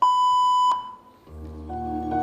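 A steady electronic beep, under a second long, cutting off abruptly with a click. About a second later the routine's music starts with soft keyboard notes.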